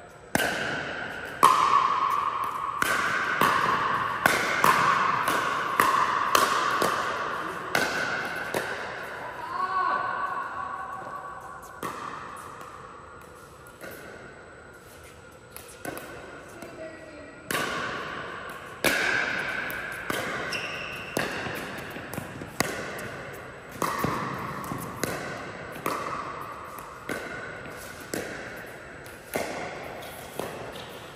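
Pickleball rallies: paddles striking a hollow plastic pickleball, with the ball bouncing on the court, each sharp pock ringing and echoing around the hall. The hits come about a second apart in two rallies, with a quieter break of a few seconds in the middle.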